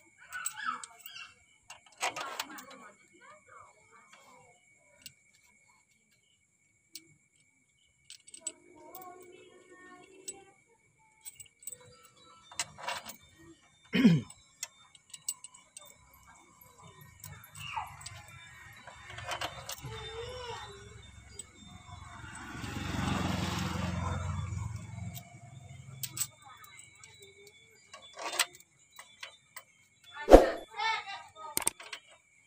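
Loose steel engine parts clinking and clicking against each other and the cylinder head of a Toyota 5K engine as they are handled and set into place, with one louder metal knock about halfway through.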